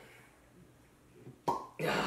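A short pop about one and a half seconds in as the stopper is pulled from a glass gin bottle, followed near the end by a man's voice starting up.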